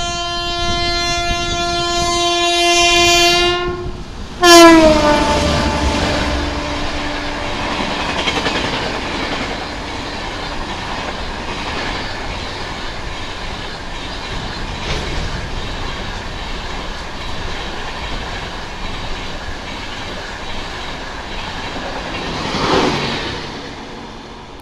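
Indian Railways WAP-5 electric locomotive sounding its horn: one long steady blast growing louder as it approaches, then a second, loudest blast about four and a half seconds in whose pitch drops as the engine passes. After that comes the steady rumble and wheel clatter of the express's coaches running past at speed, swelling once near the end.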